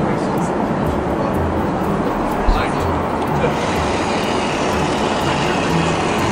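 Steady airliner cabin noise of an Airbus A380 in flight, an even rush of air and engines with no distinct events.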